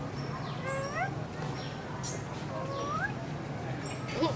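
Two short, rising squeaky calls from a long-tailed macaque, one about a second in and another near three seconds, over a steady low hum.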